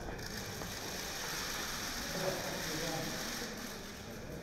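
Many press photographers' camera shutters clicking rapidly and overlapping into a dense clatter, with faint voices murmuring underneath.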